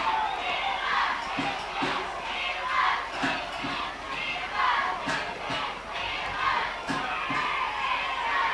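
Stadium crowd at a football game chanting and cheering in a steady rhythm, with regular low thumps falling in pairs.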